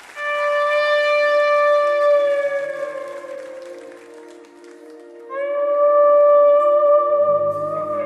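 Live instrumental rock ballad: an electric guitar (Fender Stratocaster) plays two long singing sustained notes, the first bending down and fading, the second swelling in about five seconds in, over held keyboard chords. A bass guitar line enters near the end.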